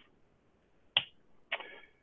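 Quiet room tone broken by one sharp click about a second in, followed by a faint brief sound shortly before the end.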